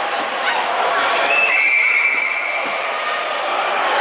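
A shrill whistle held for about a second and a half, stepping down slightly in pitch just after it starts, over the steady background chatter of an ice rink.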